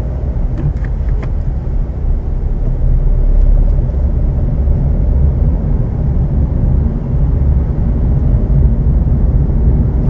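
Car engine and road rumble heard from inside the cabin, steady and low, as the car pulls away slowly in first and second gear. A few light clicks sound in the first second or so.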